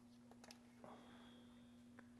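Near silence: room tone with a faint steady hum and a few faint clicks.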